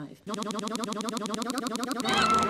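A YouTube Poop stutter loop: a tiny fragment of film audio is repeated many times a second, making a steady buzzing, pitched drone. It drops out briefly at the very start.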